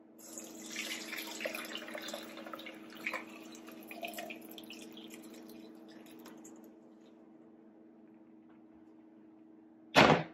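Cooked elderberry mixture poured from a cast iron pot into a metal mesh strainer over a stainless steel bowl: a splashing pour that thins to a trickle and dies away about seven seconds in. A single sharp knock at the very end.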